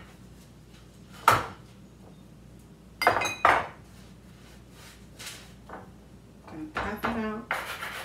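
Hands patting and pressing soft shortcake dough on a wooden board: a few separate soft pats. About three seconds in comes a brief light metal clink of a kitchen utensil being moved on the board.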